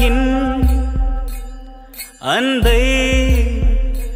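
Background music: a Tamil song with a sung melody held over a steady drum beat; a little over two seconds in, the voice swoops up and down before settling on a held note.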